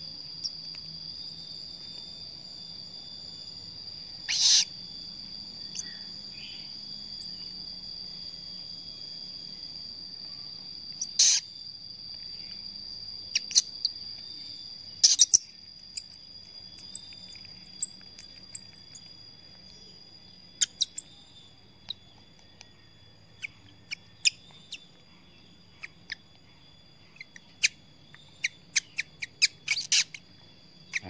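Steady high-pitched cricket chirring, with three loud short squeaks in the first half and a run of quick, sharp clicks and peeps in the second half.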